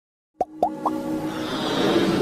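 Intro music for an animated logo sting: three quick bloops, each gliding up in pitch, in under half a second, then a held tone under a swelling rush that builds toward the end.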